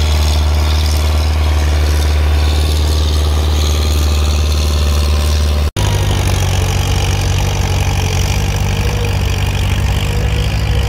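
Old farm tractor engine running steadily under load while pulling a tillage implement through the field. About six seconds in, the sound cuts off abruptly and is replaced by a different tractor engine with a somewhat higher drone.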